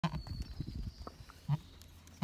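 Goats crowding right around the phone: low rustling and bumping near the microphone, busiest in the first second, with one brief low sound about one and a half seconds in.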